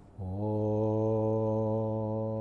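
A man's voice chanting one long, steady, unbroken low note, a held Om at the opening of a mantra recitation, beginning just after a short click.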